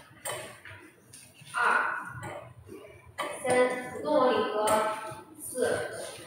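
Indistinct speech: voices talking in short phrases with brief pauses between them.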